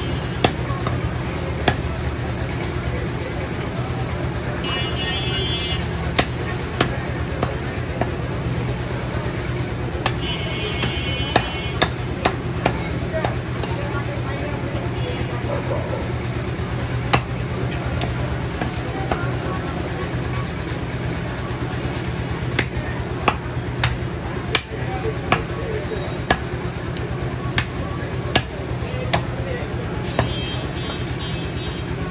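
A large butcher's knife chopping goat meat on a wooden log block, in irregular sharp knocks, a few seconds apart or closer. Behind it runs a steady hum of market and traffic noise.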